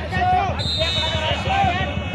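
Rapid, steady drumming with deep low thumps, going on under a man's voice over a loudspeaker.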